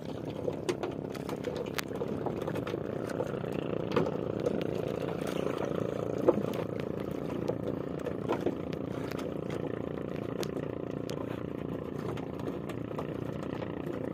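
A small boat engine running at a steady drone, with scattered clicks and knocks over it, the sharpest about six seconds in.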